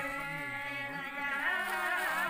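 A group of women singing a traditional Brokpa folk song together, holding long, drawn-out notes.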